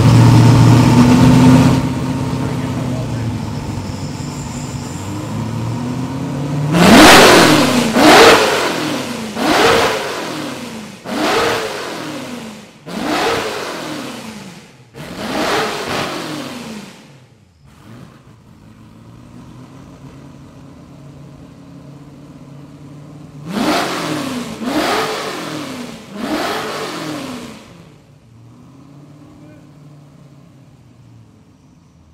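The straight-six engine of a 1938 Talbot-Lago T150 C runs at a fast idle just after starting and settles to idle about two seconds in. It is then revved in six quick throttle blips, each rising and falling in pitch, and drops back to idle. Near the end come three more blips before the engine dies away.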